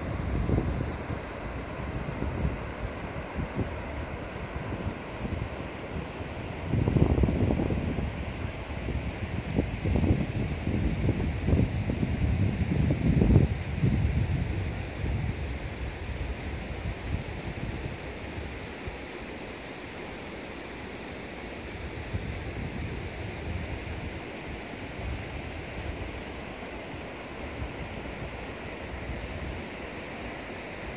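Shallow mountain river rushing over a stony bed, a steady noise, with wind buffeting the microphone in gusts that grow loud for several seconds near the middle.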